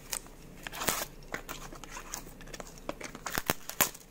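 Plastic-wrapped cardboard firecracker packs being handled: light crinkling of the wrapping with scattered clicks and taps, and a quick cluster of sharper clicks near the end.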